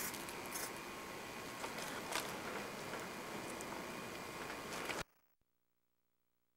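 Faint rustling and handling noise from a handheld camcorder, with a few small clicks, then the sound cuts off abruptly about five seconds in as the recording ends.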